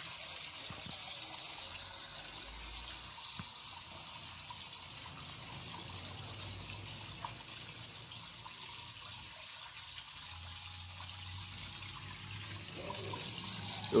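Steady sound of running, trickling water, a waterfall-like rush.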